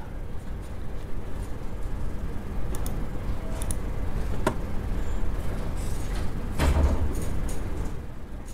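Steady low rumble of room background noise, with a few faint clicks and a dull thump a little before the end.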